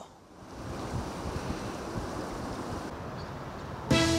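Wind buffeting the microphone outdoors, an uneven low rumbling noise that fades in over the first half second.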